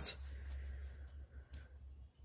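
Faint rustling of trading cards being handled and pulled from a pack, dying down about halfway through.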